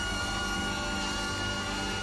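Studio band playing upbeat jazz-style entrance music, with a high note held.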